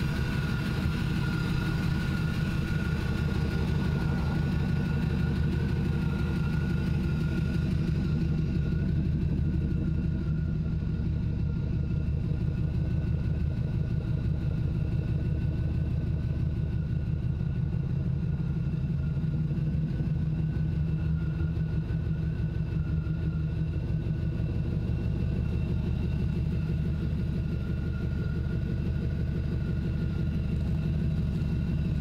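A 1955 Chevrolet pickup's LT1 V8, a 5.7-litre engine out of a 1995 Impala SS, idling steadily. A thin, steady whine sits above the engine note.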